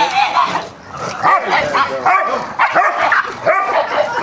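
Dogs barking at play: a quick, uneven run of short, high-pitched barks and yips, one after another.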